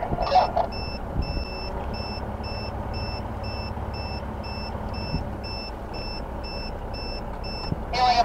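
A steady electronic beep, about two short beeps a second, over the low rumble of a motorcycle's engine and wind as it rides slowly along.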